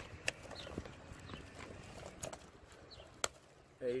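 Scattered light taps and clicks from work on an asphalt-shingle roof, the sharpest a little over three seconds in.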